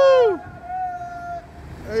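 A man's long drawn-out whooping cheer, loud at first and trailing off within half a second, followed by a fainter held call and then quieter background noise.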